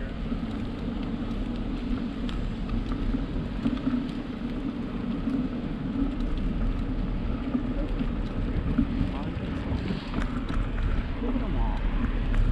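Steady low rumble of wind on the microphone and tyre noise from a bicycle rolling along a paved trail.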